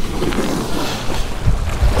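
Small waves washing over a rocky shore, with wind buffeting the microphone in low gusts, the strongest about one and a half seconds in.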